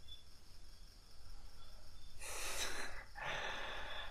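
A man breathing audibly between sentences: a strong, airy breath about two seconds in, followed by a softer breath near the end.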